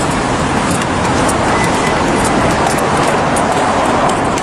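Steady traffic and street noise, with faint irregular clicks throughout.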